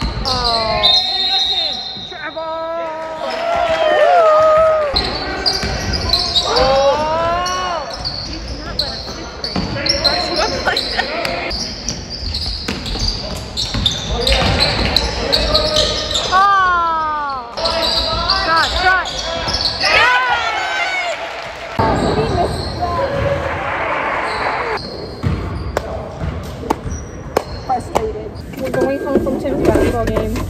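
Live high-school basketball game in a gym: the ball bouncing on the hardwood court, sneakers squeaking, and players' and spectators' voices echoing in the large hall.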